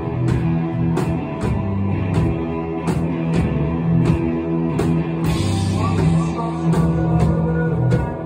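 Live rock band playing: electric guitars and drums, with drum hits keeping a steady beat about twice a second.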